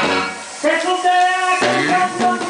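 A live band with accordion, guitar and bass playing. The music thins out briefly, then a long held note sounds from about half a second in, and the full band with bass and percussion comes back in near the end.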